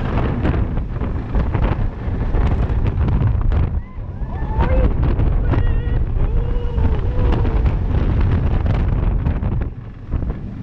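Wind buffeting the microphone of a camera riding a roller coaster at speed, a loud, steady rush with brief dips about four seconds in and near the end. Faint shouts from riders come through in the middle.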